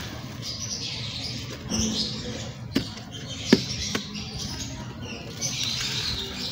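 Dried gym chalk being crumbled and rubbed into powder by hand on the floor: dry gritty crunching and scraping, with three sharp snaps near the middle, one louder than the others.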